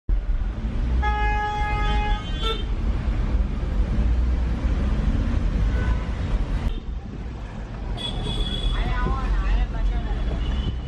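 Car horn honking in heavy city traffic, one steady note about a second long near the start, then a short toot, over the low steady rumble of engines heard from inside a car. A voice is heard near the end.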